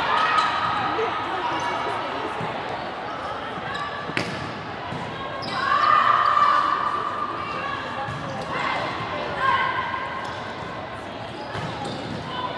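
Volleyball rally in a gym: a sharp smack of the ball being struck about four seconds in, with long, high-pitched shouts and calls from players and spectators near the start, around six seconds and again around nine seconds.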